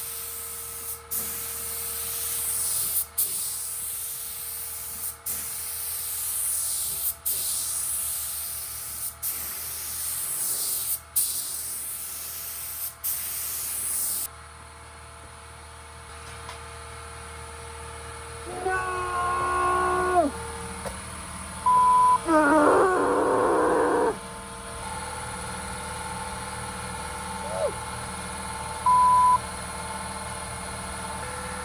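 HVLP gravity-fed pneumatic paint spray gun spraying paint, a steady high hiss that breaks off briefly about every two seconds as the trigger is released between passes, stopping about halfway through. Later come two short voice-like calls, the second the loudest, and two brief high beeps.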